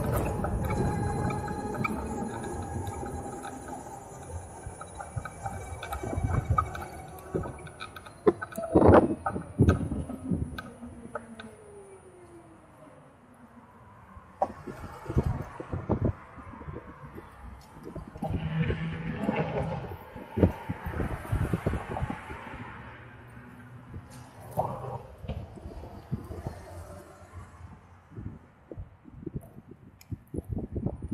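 Harley-Davidson LiveWire electric motorcycle's motor whine, a set of steady high tones that fade as the bike slows, ending in a falling whine as it rolls to a stop. Afterwards the stationary bike is nearly silent, and the sound of surrounding traffic rises and falls with a few light knocks.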